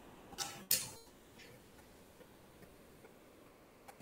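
Two short clicks in the first second, the second trailing off briefly, then near silence with faint background hiss.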